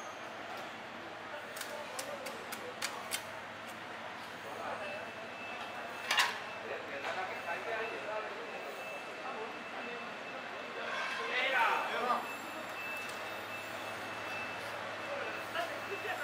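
Busy work-floor background of indistinct voices and a steady hum, with scattered sharp clicks and knocks, and a louder burst about 11 to 12 seconds in.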